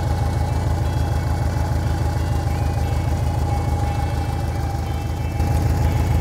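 Fuel-injected air-cooled flat-four of a Mexican VW Beetle idling steadily, with a burbling exhaust from its stock muffler fitted with a muffler cutter. It gets slightly louder near the end.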